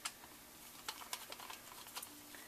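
Faint, irregular light clicks and taps of small metal hardware being handled: a bolt and the base plate fitted onto the glidecam's main shaft, about five or six clicks in two seconds.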